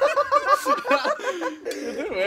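A person laughing: a quick run of repeated ha-ha pulses, about five a second, that trails off.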